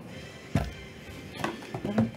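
Two sharp knocks, about half a second and a second and a half in, as a sealed cardboard trading-card box is picked up and handled on a table, with faint music underneath.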